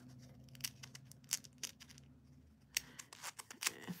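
Faint scattered clicks and crackles of a clear plastic sticker packet being handled and picked at with fingernails, over a low steady hum that stops a little before three seconds in.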